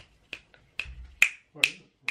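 Fingers snapping in a steady rhythm, five sharp snaps a little over two a second.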